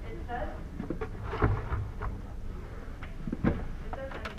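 Indistinct voices in a classroom, with two short thumps, one about a second and a half in and one near three and a half seconds.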